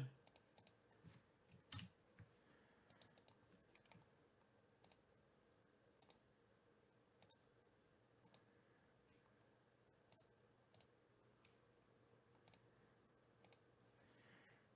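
Faint computer mouse clicks, some single and some in quick pairs, about one each second, over a faint steady hum.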